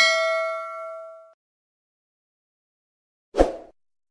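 Intro sound effects: a bright, bell-like ding with several ringing tones that fades out within about a second and a half. A short, dull hit follows about three and a half seconds in.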